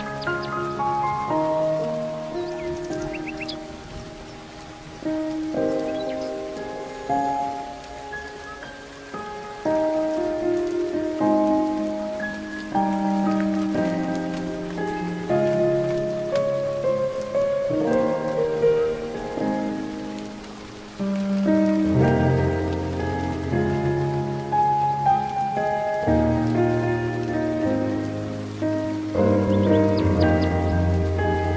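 Slow, gentle solo piano playing a melody of held notes, with deeper bass notes joining about two-thirds of the way through, over a faint steady hiss.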